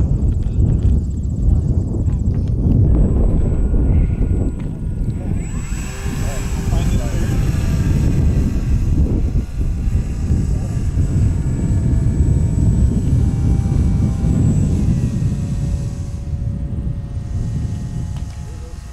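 Wind rumbling on the microphone, with a faint steady whine from a radio-controlled model glider's motor as it climbs away. The whine dips slightly in pitch about fifteen seconds in.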